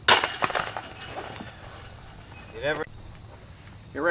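A putted disc striking the chains of a Discraft disc golf basket: a sudden loud metallic jangle that rattles and dies away over about a second.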